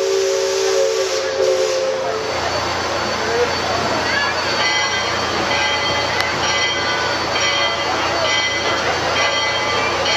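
Riverboat steam whistle sounding a steady chord of several tones, which cuts off about two seconds in. A steady hiss follows.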